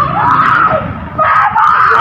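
A woman screaming and shouting in a high, strained voice, in two loud stretches with a short break just before a second in.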